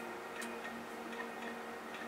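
Faint background music under a pause in speech, with a few soft ticks.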